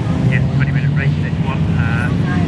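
Engines of BMW E36 3 Series race cars running steadily under load as they drive through a corner one after another, with a voice talking over them.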